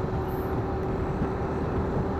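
Motorcycle riding along at a steady speed: an even, unbroken mix of engine and wind noise.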